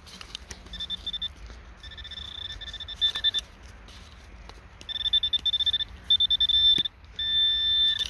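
Metal detector pinpointer beeping over a buried metal target: several bursts of rapid high-pitched beeps that run together into one steady tone near the end, the sign that the probe is right on the object.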